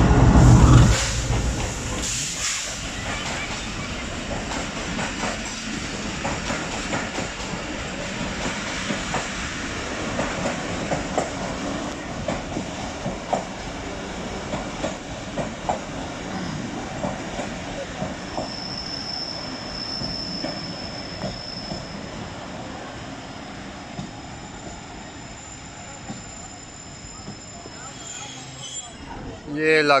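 GEU-40 diesel-electric locomotive passing close below with a loud engine rumble, followed by the passenger coaches rolling in ever more slowly, wheels clicking over the rail joints. A high brake squeal sounds for a few seconds past the middle as the train draws to a stop.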